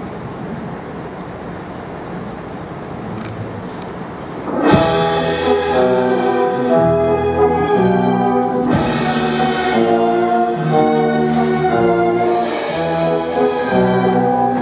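After a few seconds of steady low noise, an orchestra suddenly strikes up loudly about five seconds in, playing the music for a dance scene with strings and brass, with a second sharp accent a few seconds later.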